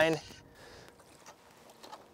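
A man's voice finishing a word, then near silence: faint open-air background with a few soft clicks.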